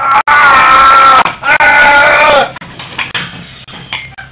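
A person's charging battle cry in a staged fight: two long, loud yells about a second each, the second falling in pitch at its end.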